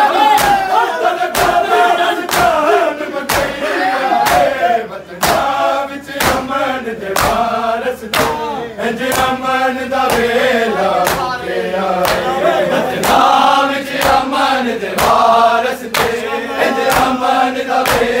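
Matam: a crowd of men striking their chests in unison, sharp slaps landing about once a second, while the men chant a mourning lament loudly in time with the beat.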